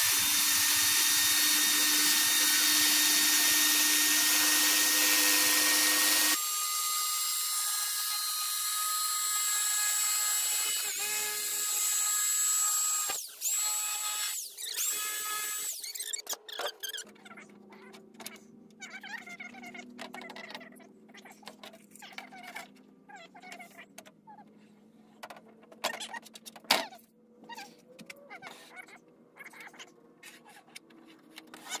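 Corded jigsaw cutting through a thin beadboard panel. It runs steadily for about six seconds, then changes pitch and stops and restarts a few times before cutting off about sixteen seconds in. After that come only light clicks and knocks from handling the board.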